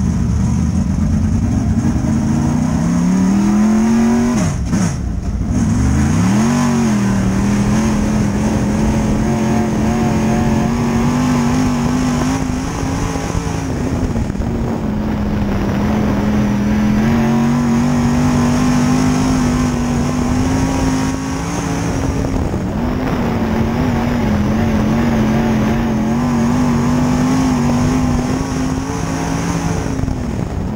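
Dirt-track Sportsman race car's engine heard from inside the cockpit: revs climb over the first few seconds, drop sharply twice around five to six seconds in as the throttle is lifted and reapplied, then hold high and fairly steady with slight rises and falls as the car runs laps on the oval.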